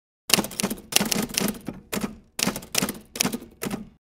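Typewriter sound effect: quick runs of sharp key clacks in several short bursts with brief gaps, starting just after the beginning and stopping shortly before the end.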